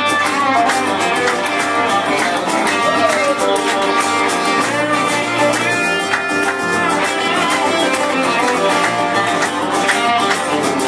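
An electric guitar and an acoustic guitar play together in an instrumental passage with no vocals. The electric guitar plays lead lines with bent, sliding notes over the acoustic guitar's rhythm.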